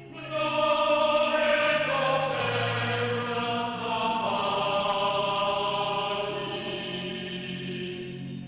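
A choir chanting in long held notes over a low drone, the chord changing every second or two.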